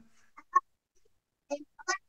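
A few short, broken voice-like blips with a nasal, honking tone, one about half a second in and a cluster near the end, between stretches of near silence.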